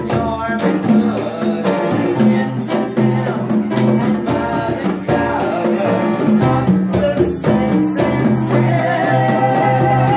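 Upright piano chords and a pair of conga drums played together, with a man singing along over them.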